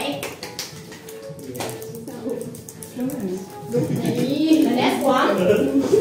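Background music playing under the chatter and laughter of a group of people, with a few sharp taps in the first couple of seconds; the voices grow louder in the second half.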